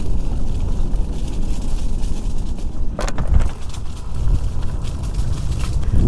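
Electric scooter riding over a rough dirt trail: a steady low rumble from the ride and wind buffeting a helmet-mounted microphone, with one sharp knock about three seconds in.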